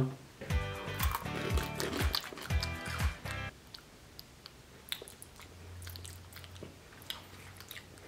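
A few seconds of background music, then crunching and chewing as thin Pocky-style biscuit sticks are bitten, heard as scattered short crunches.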